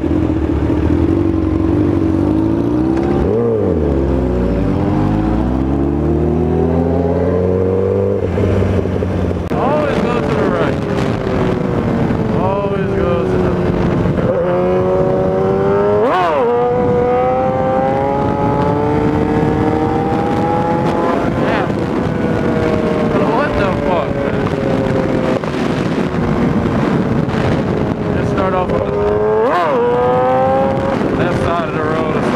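Inline-four sport motorcycle engines, a 2016 Kawasaki ZX-10R with a Honda CBR600 riding alongside, running on the move. The pitch rises and falls slowly with road speed, and three times it spikes sharply up and back for an instant. In the first few seconds two engine notes cross each other.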